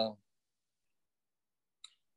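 A man's spoken word trails off, then near silence, broken by one faint short click near the end.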